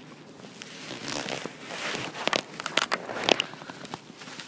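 Rustling with scattered sharp clicks and knocks from a handheld phone and clothing as the person filming shifts about in a car's cabin, starting about a second in.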